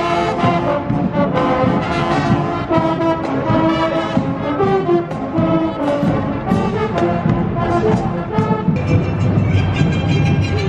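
Marching band playing a tune on brass (sousaphones and trumpets) and saxophones.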